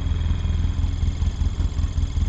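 Utility vehicle (UTV) engine idling with a steady low rumble.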